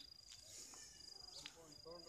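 Near silence, with a faint, high, steady insect trill that breaks off briefly, and faint voices starting near the end.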